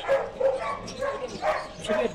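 A dog barking repeatedly in short, sharp yaps, about two a second.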